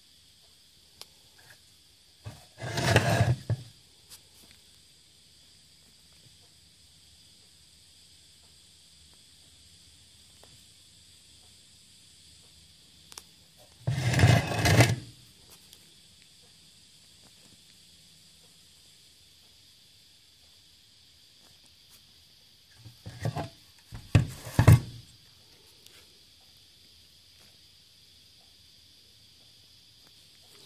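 Three short bouts of rubbing and scraping, each about a second long, near the start, in the middle and near the end, as a Delco-Remy HEI distributor cap and its plug leads are handled and pulled free. A faint, steady, high insect chirring runs underneath.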